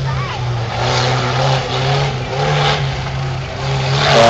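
Engine of a small off-road 4x4 revving up and down as it drives over dirt mounds on the course.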